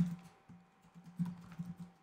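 Computer keyboard being typed on: short runs of quick keystrokes, one at the start and another from about a second in.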